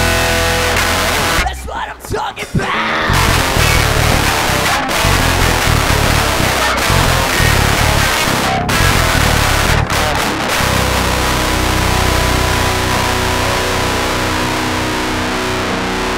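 Live rock band playing: drum kit with cymbals, electric guitar and bass guitar. The band stops briefly a few times about two seconds in, then plays on.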